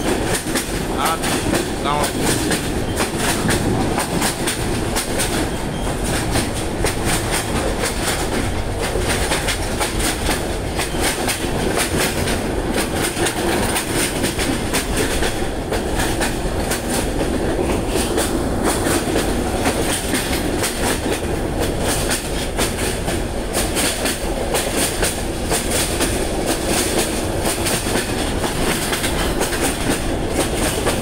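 Passenger train running at speed, heard from inside the carriage: a steady rumble with frequent clicks of the wheels over the rail joints.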